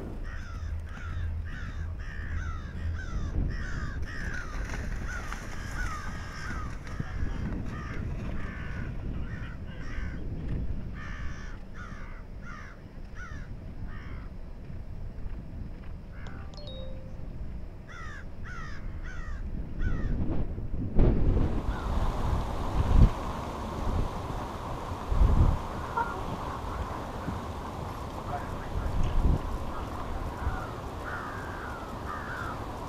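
Crows cawing over and over, short falling calls coming several a second for about the first twenty seconds. Then the sound changes suddenly to a low rumble broken by a few loud, low thumps.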